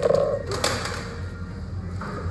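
A young child's short, high-pitched shout lasting about half a second, followed almost at once by a single knock, over a steady low hum.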